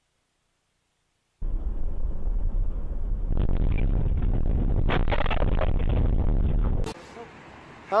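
Silence, then a loud, dense rumble of road and vehicle noise picked up by a dashcam in a moving car. It starts suddenly and cuts off abruptly about a second before the end.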